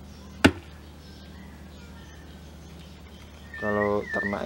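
A single sharp knock of handling noise about half a second in, over a faint steady hum. A man's voice starts with a held sound near the end.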